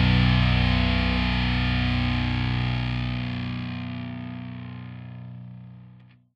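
A final distorted electric guitar chord held and ringing out as the track ends, fading steadily to near nothing.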